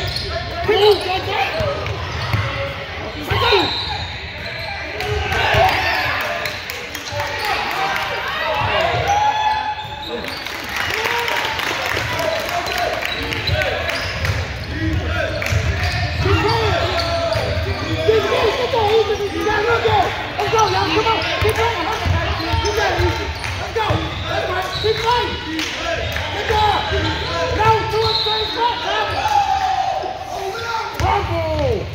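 A basketball being dribbled on a hardwood gym floor, with many indistinct voices of players and spectators echoing in the large hall.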